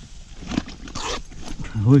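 Handling noise and rustling in grass and low vegetation, with a short, noisy rustle about a second in, followed near the end by a man's excited voice.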